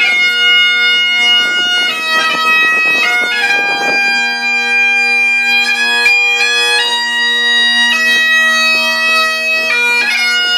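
Great Highland bagpipe playing a tune: the chanter's melody steps between held notes, with quick grace notes at each change, over the drones' steady, unbroken tone.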